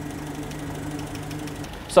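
Land Rover 2.25-litre four-cylinder petrol engine idling steadily at tick-over. It is at about 750 rpm, just brought into its correct 750–800 rpm range with a tweak of the carburettor's idle speed screw.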